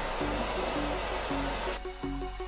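A hair dryer blows steadily over background music with a simple stepped melody; the blowing cuts off sharply near the end.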